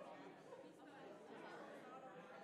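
Faint murmur of many people chatting at once in a large room, no single voice standing out.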